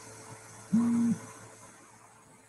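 A woman's short closed-mouth hum, a single steady "mm" about a second in, held for under half a second.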